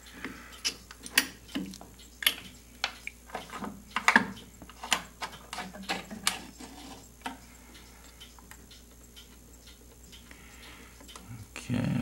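A series of irregular light clicks and taps, several a second at first, thinning out and stopping about seven seconds in.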